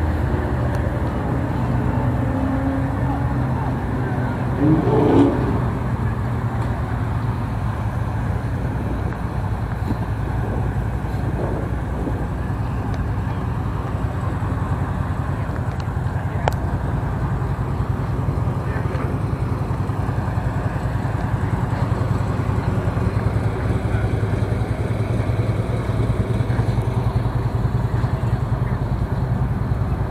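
Steady low engine drone from a vehicle moving slowly.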